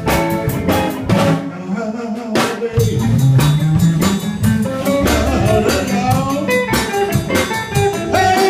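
Live blues band playing: electric guitar over a drum kit keeping a steady beat.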